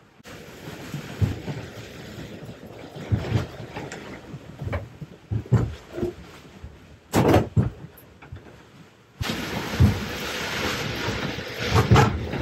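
Gale-force wind gusting against a Catalina 30 sailboat, heard from inside the cabin, with repeated knocks and thumps as the boat is buffeted and rocked; a cluster of louder bangs comes a little past the middle. In the last three seconds the wind rushes louder.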